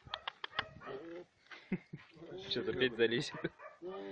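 A bear cub crying out in short calls, mixed with people talking, with a few sharp clicks in the first second.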